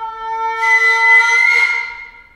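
Shinobue (Japanese bamboo flute) playing a loud, breathy high held note that enters about half a second in, rises slightly in pitch and fades near the end, over a lower sustained note from the ensemble.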